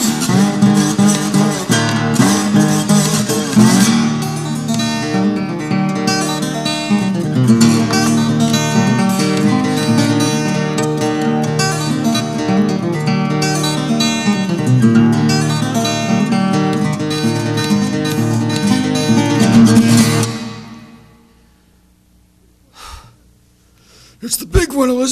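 Acoustic guitar fingerpicked in a fast instrumental passage with many quick notes, the music stopping about twenty seconds in and its last notes dying away. A short faint knock follows a couple of seconds later.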